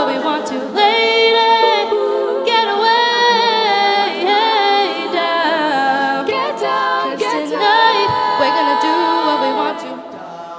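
Women's a cappella group singing unaccompanied: several voices hold and move through close-harmony chords, with no instruments.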